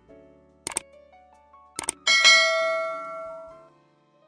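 Two short clicks about a second apart, then a bright bell chime that rings out and fades over about a second and a half: a subscribe-button animation's click and notification-bell sound effects, over soft background music.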